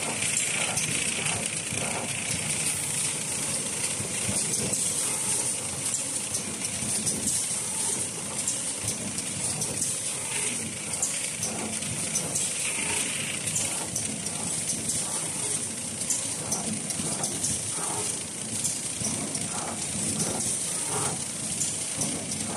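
Automatic facial tissue bundling machine and its conveyor running: a steady high hiss with frequent light, irregular clicks and knocks from the mechanism.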